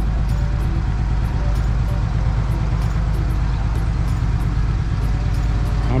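Steady low rumble of road traffic from a nearby highway, heaviest in the bass.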